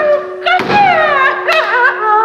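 A man's voice wailing in two long, falling cries over a steady held musical drone.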